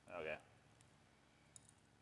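A few faint, sharp clicks of eggshell being cracked and picked off a cooked egg by fingertips.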